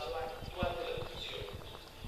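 Indistinct speech in a room, faint and without clear words, with irregular low knocks and bumps underneath.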